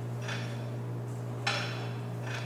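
Cable pulley machine's weight stack clinking softly a couple of times during seated rope rows, over a steady low hum.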